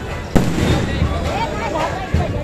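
An aerial firework bursting: one sharp, loud bang about a third of a second in, followed by a rumbling tail.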